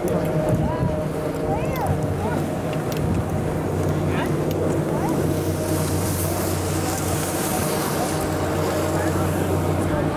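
A high-speed quad chairlift's terminal machinery running with a steady low hum, with a few short high chirps over it in the first seconds and a brief hiss later on.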